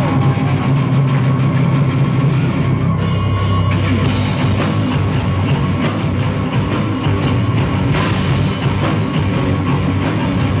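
A live heavy rock band playing through a club PA, heard from the crowd: a heavy low guitar and bass sound at first, then the full band with drums and cymbals coming in about three seconds in.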